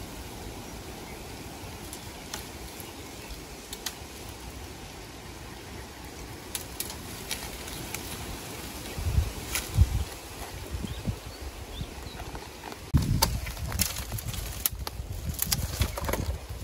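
Dry, burnt bamboo stems and litter being handled and trodden: scattered sharp snaps and cracks, with heavier thumps about nine seconds in and again from about thirteen seconds on.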